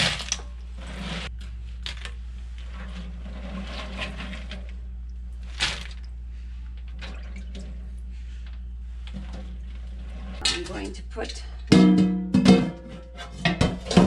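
Cold water running as boiled peanuts are rinsed, then a few louder knocks with some ringing near the end.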